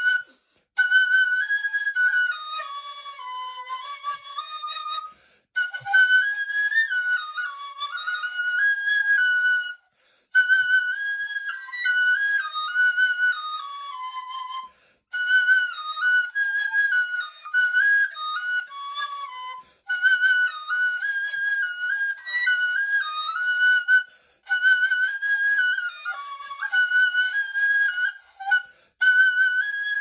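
A carved Lao flute plays a solo improvised melody in phrases of about four to five seconds separated by short pauses. The tune mostly stays on a high note and dips lower at several phrase ends.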